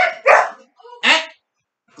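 Red-nose pit bull barking sharply at a bite sleeve, two short barks at the start, while a man snaps a corrective "Eh!" about a second in.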